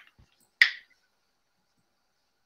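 A single short, sharp click about half a second in, with a faint low knock just before it.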